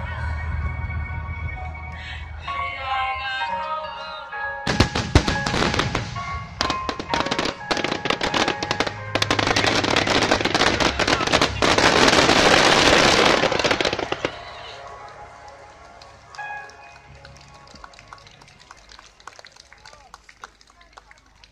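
Aerial fireworks display with music. Music plays at first; about five seconds in, a rapid barrage of shell bursts begins and builds into a loud, dense crackling of glittering stars, peaking a little past halfway. It dies away after about fourteen seconds, leaving faint music and voices.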